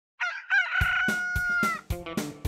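A rooster crowing once: a long call, held steady and then falling away just before the end. A children's song's backing music with a beat starts under it about a second in.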